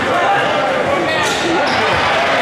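A basketball bouncing on a hardwood gym floor over a steady din of crowd and player voices.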